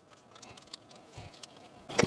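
Quiet handling noise of hands on a camera mounted on a tripod fluid head: a few faint small clicks and a soft low knock a little past the middle.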